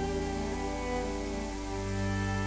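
Background music of long held chords, moving to a new chord about one and a half seconds in.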